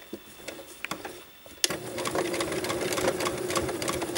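A domestic electric sewing machine starts up about a second and a half in and runs steadily, stitching a seam through folded fabric, with a rapid fine ticking from the needle mechanism. Before it starts there are only a few faint clicks of fabric being handled.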